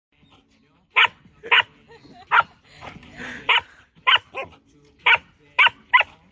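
A Samoyed and a Labrador retriever play-fighting mouth to mouth, with about nine short, sharp barks starting about a second in.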